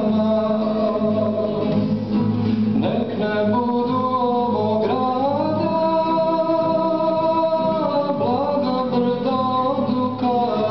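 A man singing a Serbian spiritual song live while accompanying himself on a classical guitar, holding long notes in the middle of the phrase.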